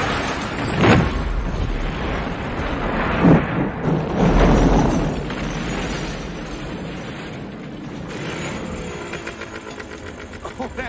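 Film sound effects of a semi truck crashing and exploding: sharp metal impacts about one and three seconds in, then an explosion's deep boom a little after four seconds that rumbles away.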